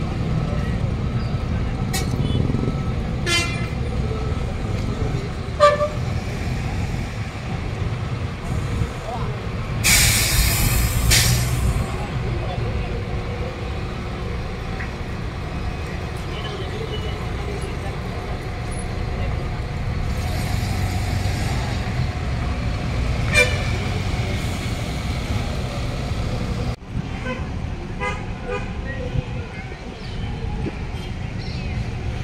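Buses idling and moving with a steady engine rumble, broken by a few short horn toots. About ten seconds in there is a loud hiss of air lasting a second or two.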